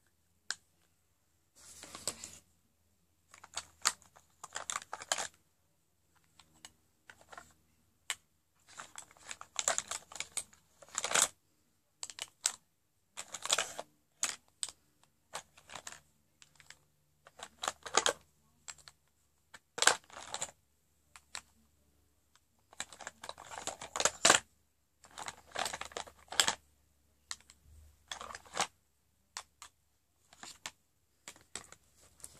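Close-up handling of lipstick tubes and caps: irregular bursts of small plastic clicks and rustles, with short pauses between them.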